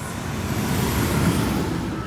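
A vehicle passing by: a rush of noise that swells to a peak about a second in and then fades.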